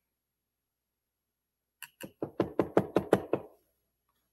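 A quick run of about nine knocks on the tabletop, about six a second, starting near the middle. It comes as white paint is being put into green paint to lighten it.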